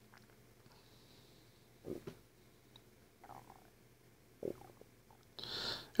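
Quiet handling of sliced onions being scooped up by hand off a wooden cutting board, with two soft knocks a couple of seconds apart.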